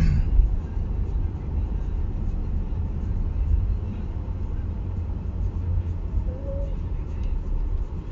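Steady low rumble of a car's engine and road noise heard inside the cabin.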